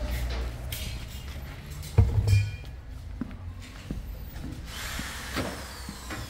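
Car workshop background: a low steady hum with scattered knocks and handling clatter, and a short, louder clattering burst with a brief whir about two seconds in.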